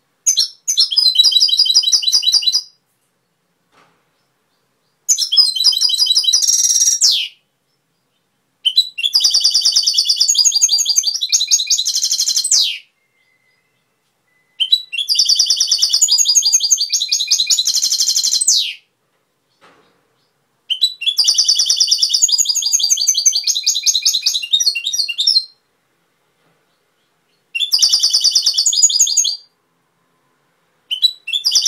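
European goldfinch singing in six phrases of rapid, high-pitched trills and twitters, each about two to four seconds long, with short silent gaps between them.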